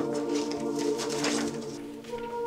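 Soft, sustained background music, with a breathy hiss over it during the first second and a half.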